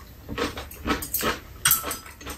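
Close-miked eating noises: chewing and mouth sounds in a few short bursts about half a second apart.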